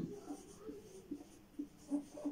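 Marker pen writing on a whiteboard: a series of short, faint strokes as a word is written.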